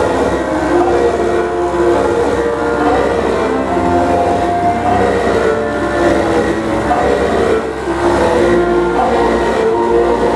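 Loud live noise music: a dense wall of overlapping held tones that shift in pitch every second or so, over a steady low hum.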